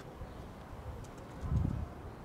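Quiet outdoor street ambience, with a short low sound swelling briefly about one and a half seconds in.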